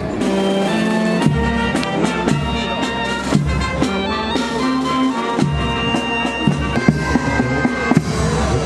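Music played on wind instruments, holding long notes that change step by step, over regular drum beats.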